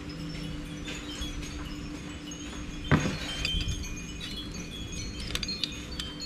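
Wind chimes tinkling irregularly, a scatter of short high ringing notes, over a low steady hum, with a single knock about three seconds in.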